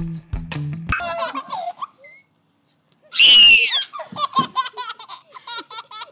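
Music with a steady beat stops about a second in, followed by a brief high baby vocalisation. After a short silence, a small child gives a loud high squeal of laughter and then a quick run of giggles.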